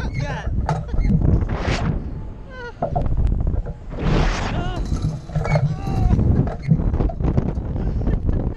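Wind buffeting the microphone of a camera on a tumbling slingshot ride, a constant heavy rumble, with the riders shrieking and laughing over it; the loudest, highest shriek comes about four seconds in.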